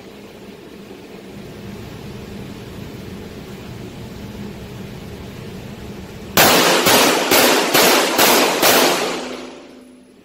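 Six 9mm pistol shots from a Glock 17, fired at an even pace of about two a second while walking forward. Each shot echoes in the indoor range. Before the string there is only a steady background hum.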